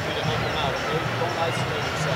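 A man's voice talking to players in a rugby team huddle, not clearly picked out, over a steady background of stadium crowd noise.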